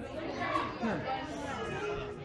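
Background chatter of several people talking at once, with no clear words.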